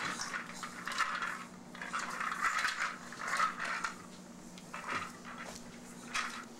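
Light clinking and rattling of containers on a refrigerator's door shelves as the open door is moved, with a few sharp clicks, over a steady low hum.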